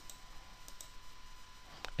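A few faint computer mouse clicks as the calendar drop-down is paged back month by month.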